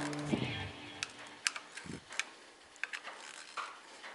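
A few light clicks and taps, scattered about a second apart, from hands handling the timing belt and pulleys of a Suzuki Samurai engine.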